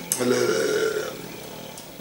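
A man's drawn-out hesitation sound, a held 'ehh' filler spoken into a close microphone while searching for a word. It lasts about a second and then fades to a quiet pause.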